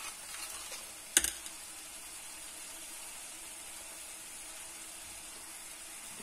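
One sharp click about a second in, preceded by a few lighter clicks, over a faint steady sizzle of grated onion and spices frying in a pan on a gas stove.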